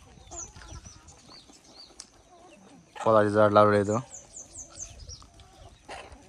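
A flock of free-range chickens clucking faintly, with thin high chirps that come in a quick run near the end.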